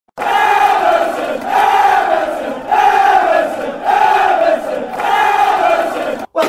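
Football crowd chanting in unison, a loud falling phrase repeated about five times, roughly once a second.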